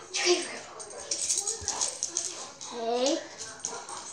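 A dog whining and yipping excitedly during rough play, mixed with short wordless vocal sounds from a boy and scuffling close to the microphone.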